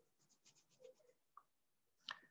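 Near silence: quiet room tone with a few very faint, short scratchy ticks.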